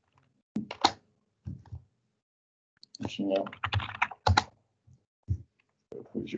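Computer keyboard typing in several short bursts, with a longer run of keystrokes about three seconds in.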